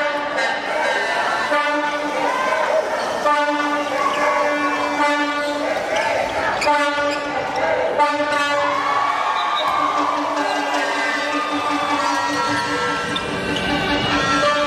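A spectator's horn blown in repeated long blasts of one steady pitch over the crowd noise of an indoor handball game, with the ball bouncing on the court now and then.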